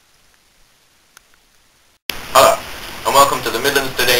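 Near silence with a faint click, then about halfway through a person's voice breaks in suddenly and loudly and carries on.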